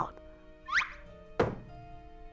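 Soft background music holding a steady chord, with two short sound effects over it: a brief upward-gliding swish about two-thirds of a second in, then a single thunk about a second and a half in.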